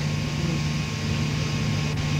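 Steady low background hum of room tone, with no clear event in it.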